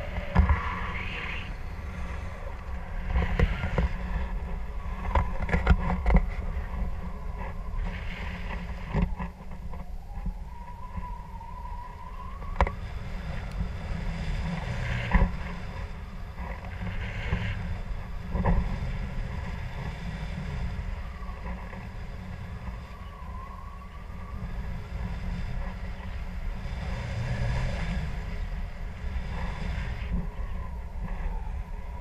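Wind rushing over the camera microphone of a paraglider in flight, a steady low rumble broken by about eight sharp knocks.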